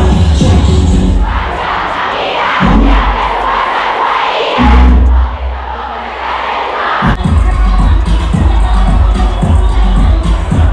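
Loud music with heavy bass playing to a big, packed crowd of school students. About a second in, the bass drops out and the crowd shouts and cheers over it, and the music comes back in about seven seconds in.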